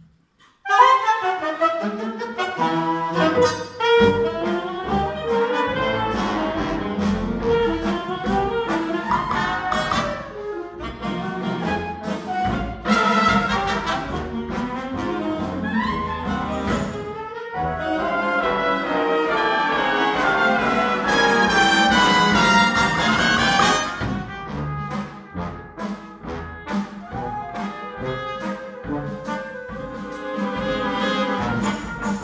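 A jazz big band playing live, its trumpet and trombone section over drum kit and congas. The full band comes in together about a second in, stops for a brief break around the middle, and plays more quietly near the end.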